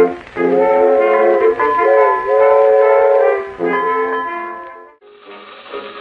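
Early 1911 gramophone recording of a brass-led band holding long sustained chords at the close of a song, then a shorter phrase fading away about five seconds in. After a brief dip, another early recording with a thinner, duller sound starts up.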